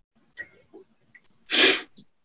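A woman's short, loud breathy rush of air about one and a half seconds in, after a few faint mouth clicks.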